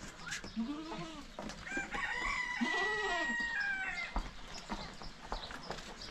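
A rooster crowing, one long drawn-out crow held through the middle, with shorter rising-and-falling calls before and within it, over scattered light clicks and knocks.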